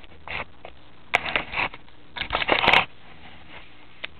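Handling noise from a camera being moved and set in place: short bursts of rustling and scraping with a few knocks, in three clusters, the last the loudest.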